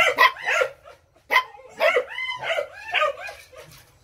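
Phu Quoc Ridgeback puppies yipping and whining: a run of short high calls that rise and fall in pitch, most of them about two to three seconds in.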